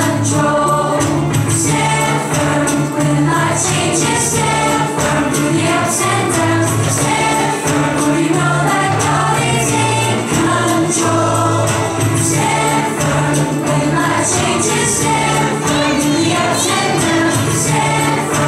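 An upbeat children's worship song, sung by a group of voices over a band with a steady beat and bright percussion about twice a second.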